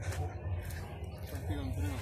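A man's voice, faint and indistinct in the second half, over a steady low rumble on the phone's microphone.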